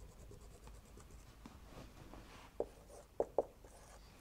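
Faint squeaks and short strokes of a felt-tip marker on a whiteboard as a dashed line is drawn and labelled, with a few sharper taps in the last second and a half.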